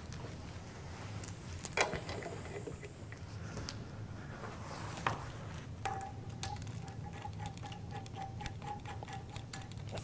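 Light clicks and knocks of pneumatic air-line fittings being handled and coupled onto a pipe-cleaning machine's air motor, coming thicker in the second half. A faint steady tone joins in about six seconds in.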